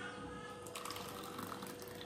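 Cooked milk mixed with vermicelli and sago being poured from a steel vessel into plastic popsicle moulds: a faint sound of liquid filling.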